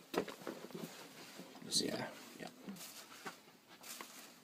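Soft, low voices talking, with a few faint clicks and rustles.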